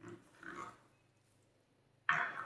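Slime squelching as a plastic spatula stirs it through foam beads in a glass dish: a short squish at the start, then a louder one about half a second in.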